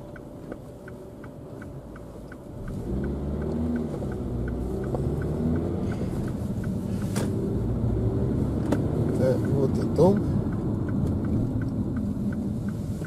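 Car engine and road noise heard from inside the cabin, quiet at first and then rising and changing pitch as the car speeds up a few seconds in. A faint, regular ticking runs through it, two or three ticks a second.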